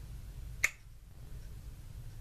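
A single short, sharp lip smack about half a second in, as lips kiss the back of a hand and pull away to test whether the lipstick transfers.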